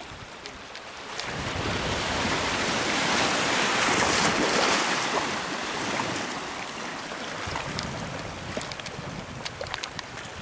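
A wave washing in over a flat rock shore platform: the rush of water swells from about a second in, is loudest around the middle, and drains away over the following few seconds.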